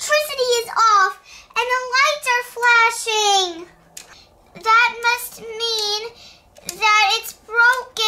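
A child singing a wordless tune in a high voice, in several phrases with short breaks between them.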